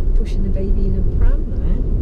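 Steady low rumble of a car driving, heard from inside the cabin, with a person's voice talking over it.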